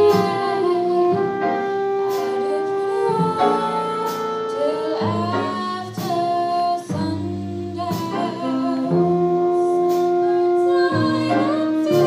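A small vocal group singing slow, held chords in a jazz ballad, with instrumental backing underneath.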